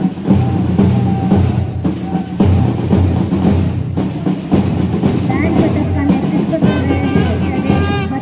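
Music with drums, continuing without a break.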